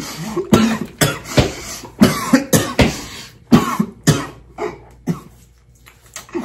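A man laughing hard in short coughing bursts, about two a second, dying down toward the end.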